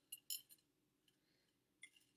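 M&M candies clicking against each other and the plate as they are pushed around by hand: a few faint clicks in the first half-second and one more near the end, otherwise near silence.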